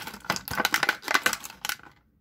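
Clear plastic blister packaging being squeezed and handled, crackling in a rapid, irregular run of sharp clicks that fades out near the end.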